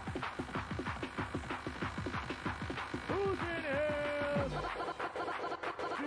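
Mid-1990s rave dance music from a DJ set: a fast, even electronic beat with a long, wavering vocal-like note held about three seconds in. Near the end the beat changes to quick, choppy synth stabs.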